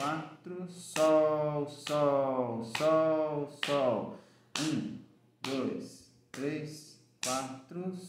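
A man singing solfège note names and counting beats aloud in Portuguese at a steady pulse of about one syllable a second, each beat marked by a sharp tap.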